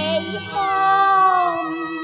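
A Cantonese opera singer holds one long sung note that slides slowly down in pitch, over instrumental accompaniment.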